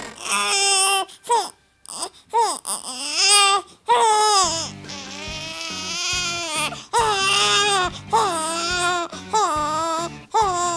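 Toddler crying: a string of high wailing cries, several held for a second or two, broken by short gasps.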